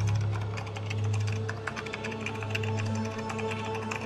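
Recorded intro music: a steady low drone with held tones, overlaid by a rapid, irregular clicking.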